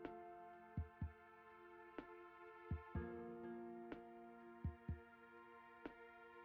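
Soft background music: sustained chords over a slow, deep double beat like a heartbeat, repeating about every two seconds.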